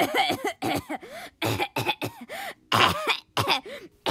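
A person voicing choking sounds: a run of about ten short, strained coughs and gagging gasps, each pitch rising and falling, with brief gaps between them.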